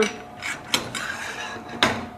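Stainless steel parts of an Edlund S11 manual can opener clicking and knocking as it is handled: a few sharp metal clicks with a short scraping rattle between them, and the loudest knock near the end.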